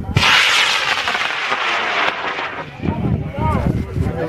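A high-power model rocket motor lighting and lifting off: a sudden loud rushing hiss that starts at once, holds for about two seconds, then drops away sharply and fades as the rocket climbs.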